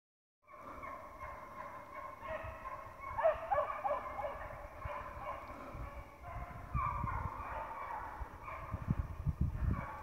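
Several black and tan coonhounds baying together in a long, overlapping chorus, the pack in full cry running a coyote. Low thuds on the microphone grow more frequent near the end.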